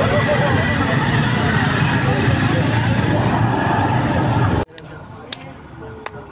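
Loud din of a crowd among motorcycles: engines running under many voices. It cuts off abruptly about four and a half seconds in, giving way to much quieter street sound.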